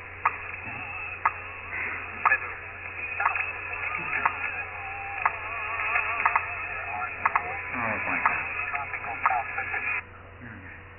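A clock ticking about once a second in the background of an old time-lapse film's soundtrack, over wavering, warbling tones and a steady low hum.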